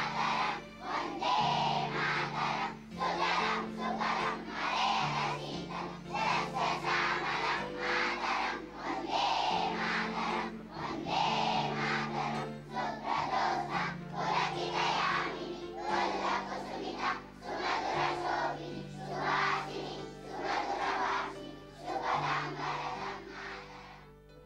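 Many children's voices singing together in unison, as at a school assembly, over held low accompanying notes that step to a new pitch every second or two.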